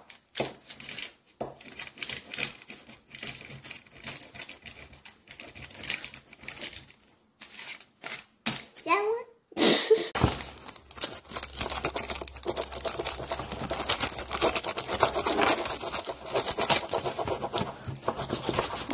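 A marker tapping and scribbling on paper and a paper cupcake liner crinkling as it is handled, in scattered clicks and rustles that turn into denser, steadier crinkling about ten seconds in. A child's short vocal sound comes just before that.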